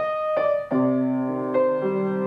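Upright piano being played: a couple of single treble notes, then a sustained chord with a low bass note entering just under a second in, with more notes struck over it.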